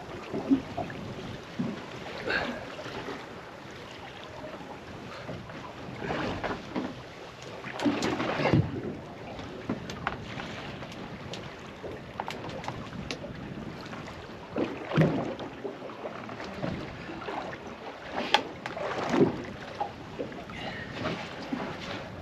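Choppy sea water lapping and slapping against the hull of a small boat, with wind on the microphone. A few short knocks and splashes stand out, the loudest about eight seconds in.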